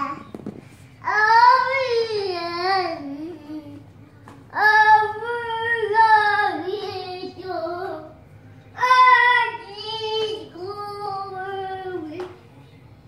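A toddler girl singing in three long phrases, her high pitch wavering up and down, with short breaks between them.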